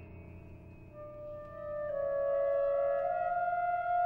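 Contemporary chamber-ensemble music. Over a quiet low sustained background, held wind-instrument notes enter about a second in, swell in loudness and step slowly upward in pitch.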